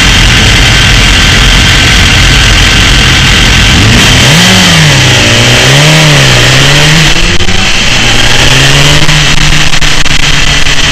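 BMW S1000RR inline-four sport-bike engine, heard very loud from an onboard camera: idling at first, then from about four seconds in revving up and dropping back twice as the bike pulls away, settling to a steadier note near the end.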